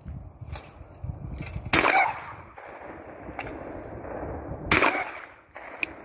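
Two loud shotgun shots about three seconds apart, each with a short ringing tail, with a few fainter sharp cracks between them, as clay targets are shot at.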